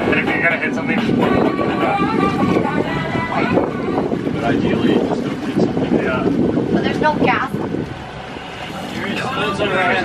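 Wind on the microphone and water noise aboard a small open boat underway, with voices talking over it.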